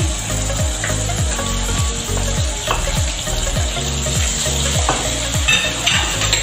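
Chopped garlic sizzling steadily as it fries in hot oil in a wok, stirred with a spatula that scrapes the pan a few times.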